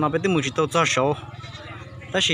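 Speech: a voice talking for about a second, then a short pause.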